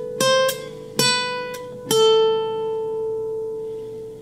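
Nylon-string classical guitar playing single picked notes on the high E string: the slow end of an A natural minor box-pattern phrase, three notes stepping down (C, B, A) about a second apart. The last note is left ringing and slowly fades.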